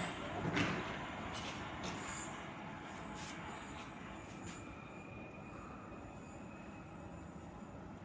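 London Underground Jubilee line train (1996 Stock) pulling away from the platform. Its running noise fades as it moves off down the track and settles to a low, steady rumble after about four seconds. A faint, thin high whine is heard in the middle.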